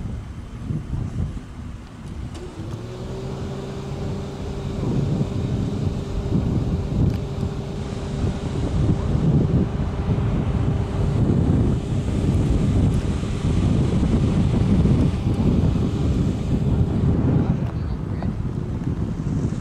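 Motor vehicle engine running with a steady hum that sets in a few seconds in and fades near the end, over low wind rumble on the microphone.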